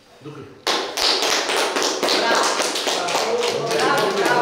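Dense, rapid tapping and clattering of many small hard impacts, starting suddenly just under a second in, with people's voices mixed in.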